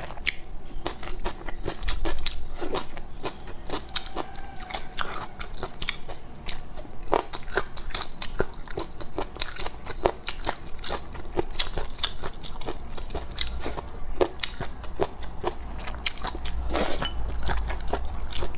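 Close-miked chewing of cold-dressed tilapia fish-skin rolls, which are chewy and crisp: many small wet crunches and clicks, a few each second, without pause.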